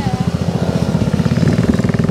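A small motorcycle engine running steadily at idle close by, a rapid even putter.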